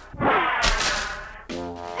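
Cartoon explosion sound effect: a sudden blast with a low thud that dies away over about a second. A brass music cue comes in near the end.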